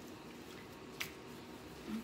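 Quiet room tone with a single short, sharp click about a second in.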